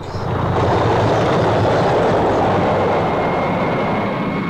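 Sound effect of a train running at speed: a loud, steady rushing rumble that swells up just after the start.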